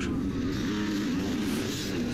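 Several off-road motorcycles racing in a pack, their engine notes overlapping and wavering up and down in pitch.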